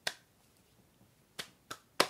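A person snapping their fingers: one sharp snap at the start, a pause of over a second, then a few more snaps near the end, about a third of a second apart.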